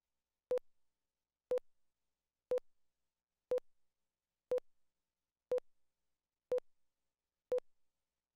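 Countdown leader beeps on a broadcast program slate: a short mid-pitched tone once a second, eight times, marking the seconds counting down to the start of the show.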